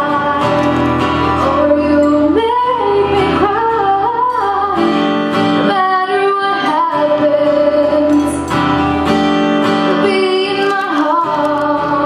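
A woman singing solo with her own strummed acoustic-electric guitar, performed live.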